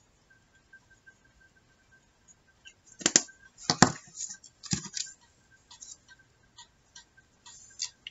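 Small pieces of paper being handled and set down on a plastic cutting mat: scattered light taps and rustles, with a few sharper taps about three to five seconds in. A faint steady high tone sits underneath.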